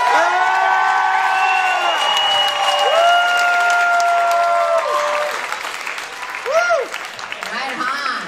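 Audience applauding and cheering, with several long held whoops over the clapping and a short whoop about six and a half seconds in.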